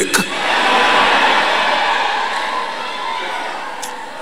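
A large congregation shouting and cheering together, a dense swell of many voices that peaks about a second in and slowly dies away. A single sharp click near the end.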